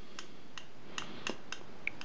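A screwdriver turning a small screw into a wooden block gives about six faint, irregular clicks.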